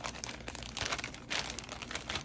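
Clear plastic polybag crinkling as it is handled, in an uneven run of crackles that grow louder now and then.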